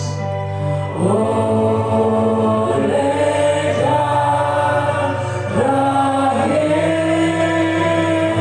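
A slow Indonesian worship song: a man singing into a microphone over a PA, with keyboard accompaniment underneath. The voice holds long notes and slides up into new ones every second or so.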